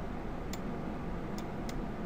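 Three light clicks from a computer mouse, spread over the two seconds, above a steady low hiss and hum of room and microphone noise.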